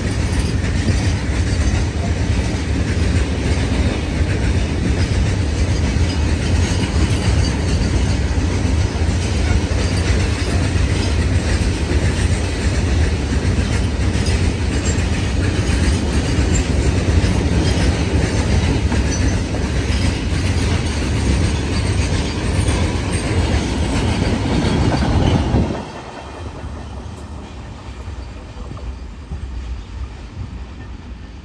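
Long freight train of covered goods wagons rolling past close by: steady, loud noise of wheels running over the rails. About four seconds before the end it drops off sharply as the last wagon goes by.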